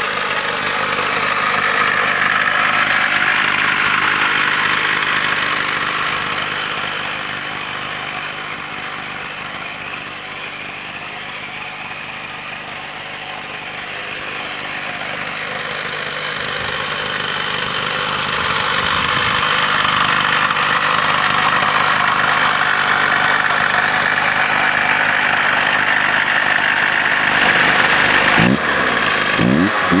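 Two-stroke chainsaw engine driving a homemade cable winch, running steadily. It grows fainter for several seconds in the middle and then louder again.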